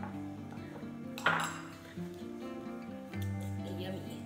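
Background music, with a spoon clinking once against a small bowl about a second in.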